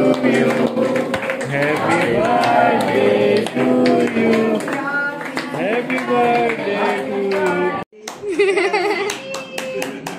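A group of people clapping in time while a birthday song is sung. After a sudden cut near the end, voices and regular clapping go on.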